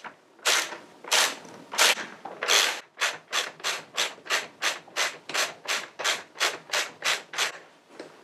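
Ratchet wrench swung back and forth on a motorcycle's rear axle adjuster bolt, each return stroke giving a short rasp of pawl clicks. Four slower strokes come first, then a quicker run of about three or four a second.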